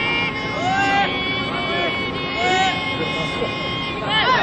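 Several young baseball players shouting long, drawn-out calls across the field, overlapping voices with held pitches, the chant-like chatter of players and bench before a pitch.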